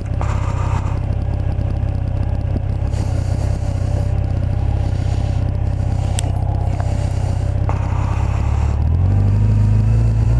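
Yamaha FJR motorcycle's inline-four engine running at a steady cruise, heard with wind rush from a camera on the bike. About nine seconds in, the engine note rises and gets louder as the throttle opens.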